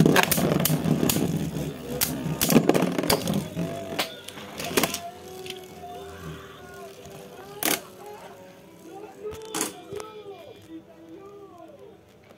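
Beyblade spinning tops spinning and clashing in a plastic stadium: a dense rattle with sharp clacks for the first few seconds, as one top bursts apart. After that the remaining top spins on more quietly, with a few single clicks, while faint wavering tones rise and fall in the background.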